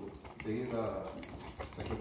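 A low murmured voice with a few faint clicks.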